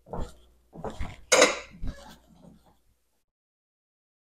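A metal spoon clinking against a ceramic coffee mug and being set down on the kitchen counter: a few short clinks and knocks, the loudest about a second and a half in. Then the sound cuts out completely.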